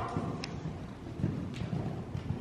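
Horse hoofbeats, dull irregular thuds on the soft dirt footing of an indoor arena, with a faint click of tack now and then.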